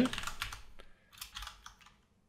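Computer keyboard typing: a quick run of keystroke clicks, breaking off briefly about halfway through and then resuming.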